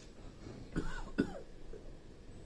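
A person coughing: two short coughs in quick succession about a second in.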